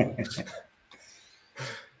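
A man's short laugh near the end, following the tail of a spoken word.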